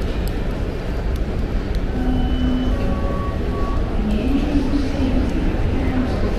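Airport terminal hall ambience: a steady low rumble with faint distant voices.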